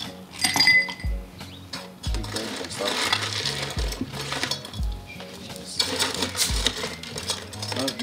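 Ice cubes clinking and rattling into glasses, with a sharp ringing clink about half a second in, over background music with a steady beat.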